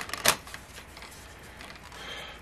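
A few short clicks and rustles from a paper scratch-off ticket being handled on a wooden table in the first moment, then quiet room tone.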